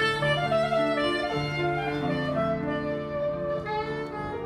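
Soprano saxophone playing a melody of changing notes over grand piano accompaniment.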